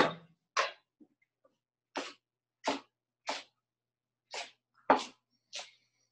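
Chef's knife chopping kale on a wooden cutting board: eight separate chops, roughly one every half second to second, each cut off sharply into silence between strokes.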